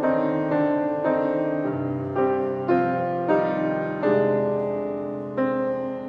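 Background music: slow, gentle piano, notes and chords struck about every half second and left to ring, with one chord held longer near the end.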